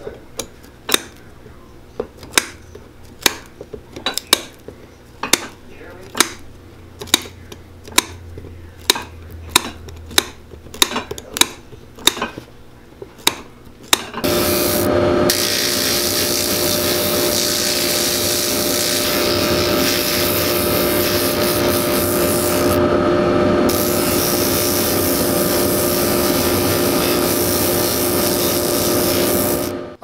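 End nippers snipping off the protruding lemonwood pegs on a pegged leather sole, one sharp snap at a time, about one or two a second. About 14 seconds in, a rotary sanding disc starts up and runs steadily, grinding the peg stubs flush with the sole.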